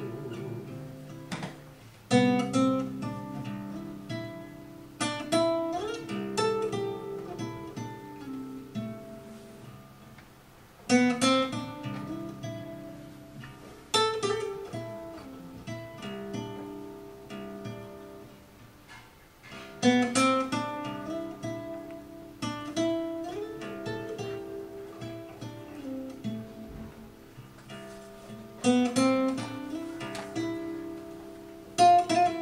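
Solo acoustic guitar playing an instrumental passage: full chords struck every three to six seconds and left to ring, with single picked notes in between.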